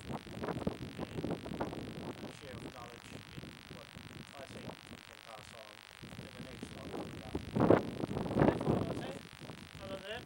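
A man talking, the words indistinct, with a pause in the middle and a louder stretch of speech near the end.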